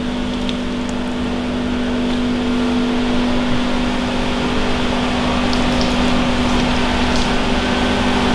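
Water pouring from a plastic watering can and running off a freshly sealed car bonnet, over a steady mechanical hum.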